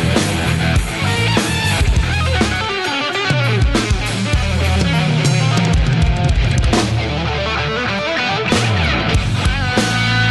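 Instrumental rock band playing in the melodic-shredding style: fast melodic lead lines on electric guitar over electric bass and a drum kit.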